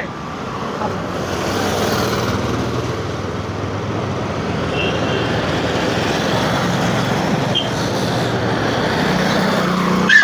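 Steady motor-vehicle traffic noise with a low engine hum.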